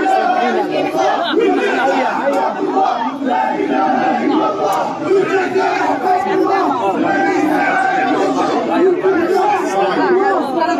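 Large crowd of many voices shouting and chanting together, loud and unbroken.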